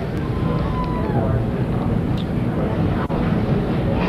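Steady low outdoor rumble and hiss picked up by a camcorder microphone, with a faint thin tone about a second in.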